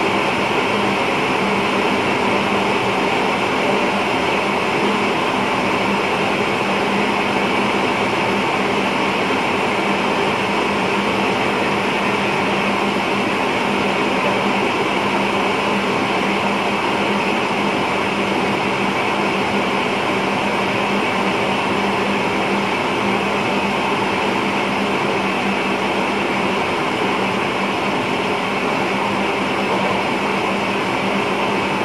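Steady running noise inside an electric passenger train's driver's cab at speed: a continuous rumble and hiss with a steady low hum underneath, unchanging throughout.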